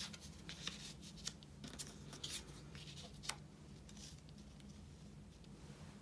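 Faint rustling of paper and cardstock pieces being handled and laid onto a burlap ribbon, with a few light clicks and taps, over a low steady hum.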